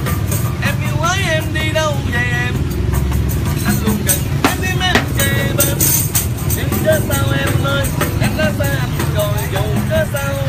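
A voice singing a ballad over backing music, with sharp tambourine jingles struck throughout and a steady low rumble underneath.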